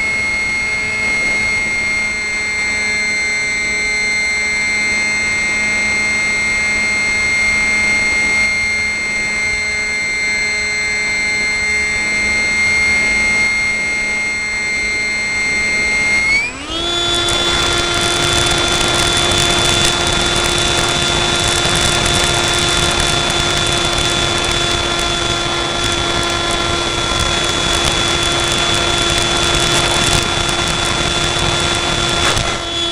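Parkzone F-27Q Stryker's electric motor and pusher propeller running, a steady whine with air rushing past. About halfway through, after a brief dip, the whine rises quickly to a higher pitch and holds there, with a louder rush of air.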